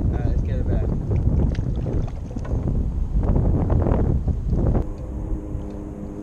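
Wind buffeting the microphone, a loud low rumble that eases about five seconds in. As it drops, a steady low hum of several tones comes in.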